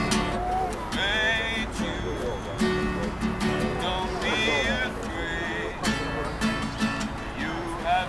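Acoustic guitar strummed by a street busker, with voices mixed in.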